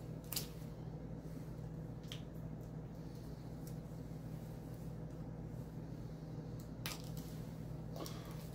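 Kitchen knife working open the foil wrapper of a block of cream cheese, using the blunt back of the blade: faint crinkling with three short sharp clicks, the loudest near the end. A steady low hum runs underneath.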